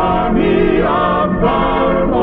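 Gospel vocal group and choir singing the closing phrases of a song in close harmony, holding chords that glide from note to note.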